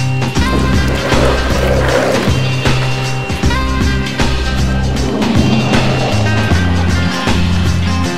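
Background music with a steady beat and bass line, over the rolling rumble of skateboard wheels on asphalt from an Omen Mini Sugar mini cruiser. The wheel noise swells twice, about a second in and again around five seconds.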